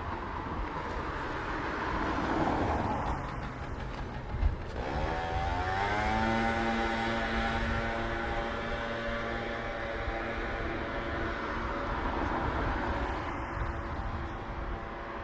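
Street traffic: a car passing, then a motorbike's engine speeding up about five seconds in, its note rising and then holding steady as it approaches. A single sharp knock comes just before the engine note rises.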